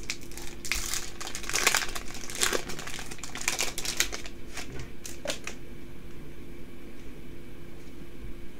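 Foil wrapper of a Yu-Gi-Oh booster pack crinkling as it is torn open and the cards are pulled out. The rustling is quick and irregular for the first five seconds, then thins to quieter card handling, over a faint steady hum.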